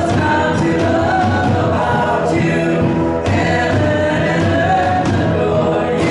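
Group of voices singing a contemporary worship song with instrumental accompaniment, the music continuous and steady in level.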